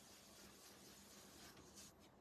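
Near silence with faint scrubbing of a round ink-blending brush rubbed over paper.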